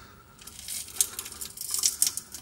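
Rear differential cover being pulled loose by hand, its old silicone (RTV) gasket peeling away from the axle housing in a run of small high-pitched crackles and ticks, with one sharper click about a second in.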